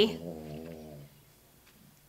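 A sleeping pet snoring: one low, drawn-out snore lasting about a second.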